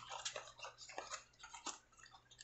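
A small cardboard box being opened by hand: flaps folded back and the card bending against the fingers, giving a run of faint, irregular clicks and crackles.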